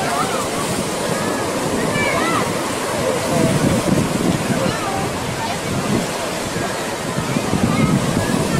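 Ocean surf breaking and washing in over a rocky reef shore, a steady rushing of water.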